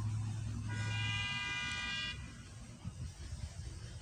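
A car horn sounding once, one steady held note lasting about a second and a half, starting under a second in.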